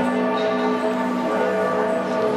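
Church bells ringing: several bells at different pitches sound together, their tones overlapping and ringing on.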